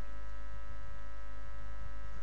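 Steady, low electrical mains hum, with no other distinct sound.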